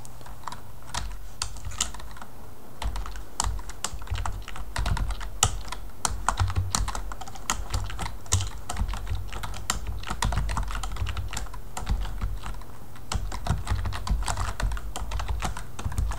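Typing on a computer keyboard: irregular runs of keystroke clicks with short pauses between them.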